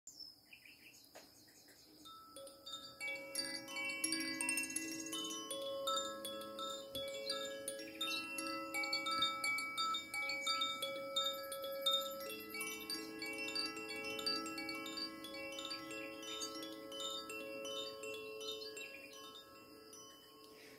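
Wind chimes ringing in many overlapping, high, bell-like tones over soft sustained lower tones, like a calm ambient intro. It enters about two seconds in and tapers off toward the end.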